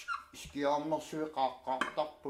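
Hand tools clicking and clinking against the parts of a dismantled CRT set, a few short sharp knocks, with a voice speaking over them.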